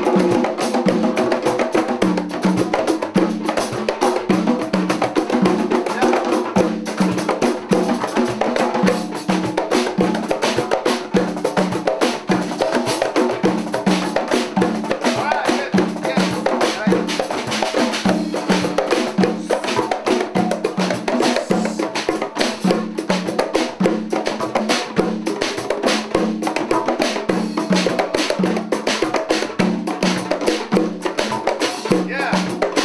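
A group of hand drums (djembes, congas and bongos) and a drum kit playing together in a steady, repeating rhythm, with a low drum note recurring on the beat under dense hand strokes.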